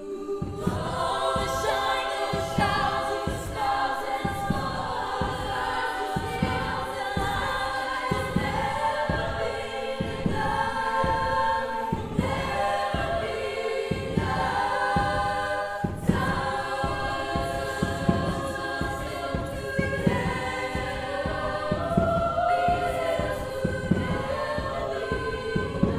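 Women's choir singing in close harmony, coming in about half a second in. Under the voices runs a steady low beat on a bass drum.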